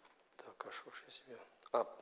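Quiet men's voices from the congregation calling out a correction, softer than the preacher, from about half a second in. The preacher's own voice starts near the end.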